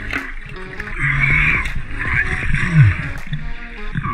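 Background music, over water splashing and trickling as a diver in a wetsuit climbs out of the sea onto a boat's stern.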